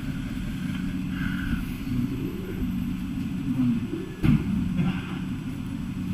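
Bus diesel engine running steadily with a low hum, and a single knock about four seconds in.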